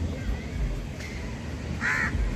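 A short bird call just before the end, over a low steady rumble.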